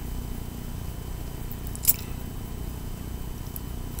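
Quiet room tone with a steady low hum, and one short sharp click just under two seconds in.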